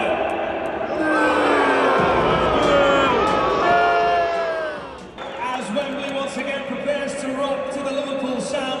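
Stadium public-address sound over crowd noise: voice and music through the arena speakers. A run of falling tones about a second in ends abruptly about five seconds in, followed by steadier tones.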